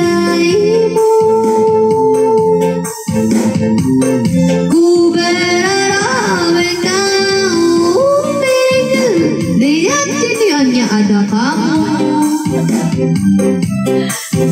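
A woman singing into a microphone over a keyboard backing track. She holds long notes early on, then slides through quick runs of notes in the middle.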